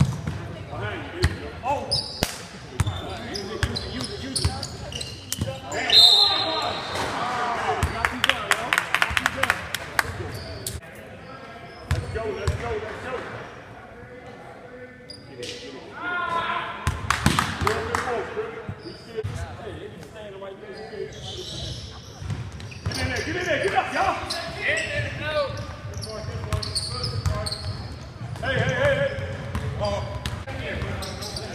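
Basketball bouncing on a hardwood gym floor during live play, with players' voices, all echoing in a large gym hall.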